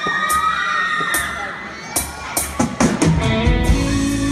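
A young audience cheering and shouting in a hall, with sharp hits cutting through. About three seconds in, a live band with electric guitar starts playing over the cheers.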